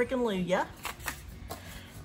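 A voice trails off, then paper rustles with a few light taps as a rolled-up paper reference sheet is handled and set down.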